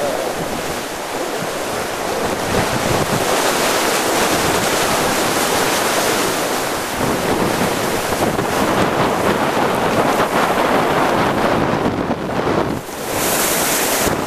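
Wind buffeting the microphone over the continuous rush of breaking waves and water along the hull of a sailing yacht driving through rough seas, with a short lull about thirteen seconds in.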